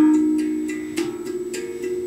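Steel handpan played with the fingers: struck notes ring on and overlap. The loudest note, struck just before the start, fades away, with lighter strikes about a second in and near the end.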